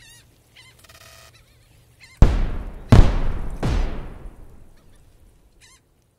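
Sound-effect sting for an animated channel logo: a brief honk-like tone, then three heavy booming hits about 0.7 s apart, each dying away, with faint short chirps around them.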